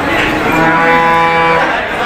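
A cow mooing once: one steady, level-pitched moo of a little over a second, starting about half a second in.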